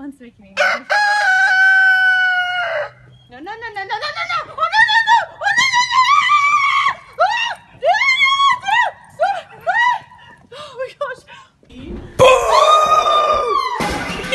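A rooster crowing: one long held call about a second in, then a run of short rising-and-falling cries, and another long call near the end.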